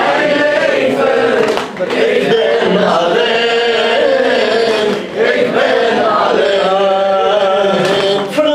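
A man's solo voice chanting a Shia mourning lament in long, sustained melodic lines, with brief pauses for breath about two and five seconds in.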